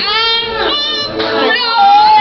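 Young women's voices singing loudly together over music, their pitch sliding downward at the start and again about halfway through.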